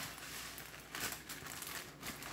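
Faint crinkling and rustling of packaging being handled.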